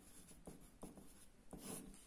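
Pencil writing digits on paper: a faint run of short scratching strokes, with a slightly longer stroke near the end.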